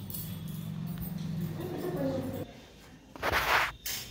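A low voice murmuring for about two and a half seconds, then a brief loud burst of noise a little after three seconds in.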